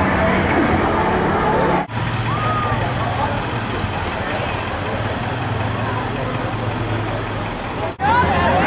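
Engine of a slow-moving vehicle running steadily with a low hum, under street and crowd noise. The sound breaks off for an instant about two seconds in, and afterwards the hum is lower in pitch.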